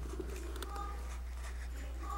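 Infant making a few brief, soft cooing sounds over a steady low hum.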